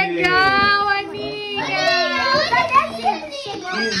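Several young children shouting and squealing excitedly over one another, high voices with long drawn-out, gliding cries.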